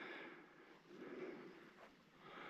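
Near silence: faint outdoor background with a couple of soft, brief swells of noise.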